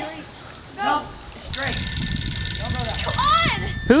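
A mobile phone ringing: an electronic ringtone of steady high tones comes in about a second and a half in and holds for about two seconds, with short shouts from a voice over it.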